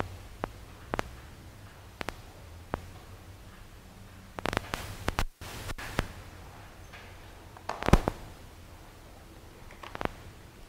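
Metal tweezers and a dissecting needle clicking and tapping against a glass microscope slide and a plastic tray: a series of separate sharp clicks, bunched together around the middle, with the loudest knock about eight seconds in as the tools are set down.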